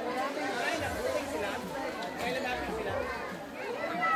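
Background chatter of several people talking at once, their voices overlapping.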